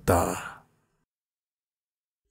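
A voice trails off breathily at the end of a spoken line over the first half second, then dead silence.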